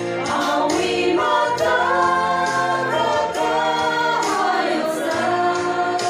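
A women's group singing a gospel song together in the Tangkhul Naga language, sustained sung lines without a break.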